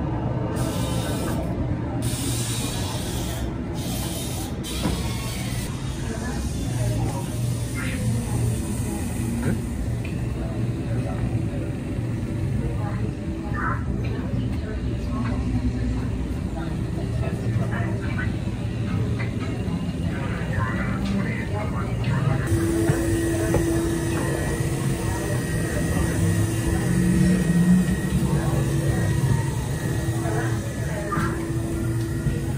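Indistinct background voices over a steady low rumble. About two-thirds of the way through, a steady held tone joins in.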